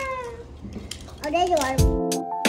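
A toddler's long, drawn-out whine, falling in pitch and fading out about half a second in, then a short squeal that rises and falls. Near the end, music with a beat starts.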